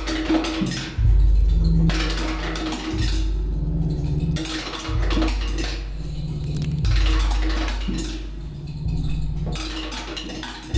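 Drum kit played in fast, clattering metallic strokes, layered over low sustained tones that break off and re-enter about every two seconds.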